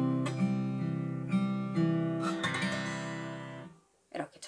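Acoustic guitar fingerpicked in a slow 6/8 arpeggio, the closing bars of a C-key outro: single notes plucked over ringing bass notes, the last chord fading to silence shortly before the end.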